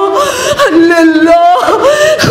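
A woman's voice at a microphone, chanting a line of a Muharram majlis lament in long held notes that slide up and down between them.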